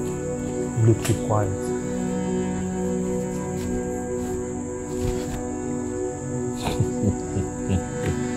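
Crickets chirping steadily in a night ambience, under a low, sustained music score. Falling sweeps come about a second in and again near the end.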